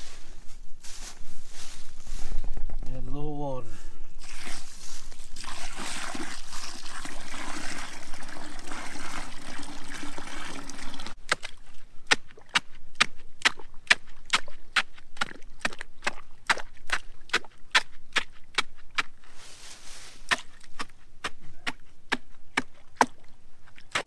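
Water poured from a bucket into a fence-post hole, splashing into the concrete mix for several seconds. Then a wooden stick is jabbed repeatedly into the wet concrete at the post's base to tamp it, sharp taps about two to three a second.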